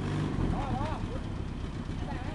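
Lifted Suzuki 4x4's engine running steadily at low revs as the truck crawls down a steep, rutted dirt slope, a little louder in the first half-second.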